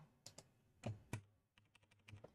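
A few computer keyboard keystrokes, sparse and faint: two light taps early, then two louder ones about a second in.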